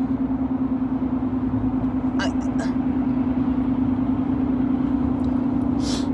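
Steady drone of a car cabin, a low hum with road or engine rumble under it. There are a few short breathy sounds, like sniffs, about two seconds in and again just before the end.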